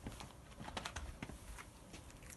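Faint scattered clicks and scuffs, about five of them, from a person shuffling and moving about on patio paving, over a low wind rumble on the microphone.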